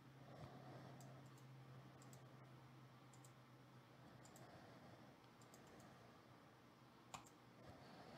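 Faint computer mouse and keyboard clicks, a scattering of light clicks with one sharper click about seven seconds in, over a steady low hum.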